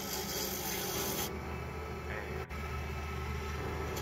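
Wood lathe spinning a burl-and-resin pen blank while a hand-held turning tool cuts it, a scraping, hissing cut over the steady hum of the lathe. The cutting noise is strongest in the first second or so.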